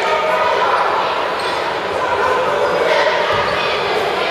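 A basketball being dribbled on a hardwood gym floor under a steady chatter of voices, the bounces coming through more plainly near the end.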